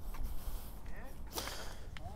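Clothing rustling against a clip-on microphone as a person crouches, with one brief swish about one and a half seconds in, over a low rumble of wind on the microphone.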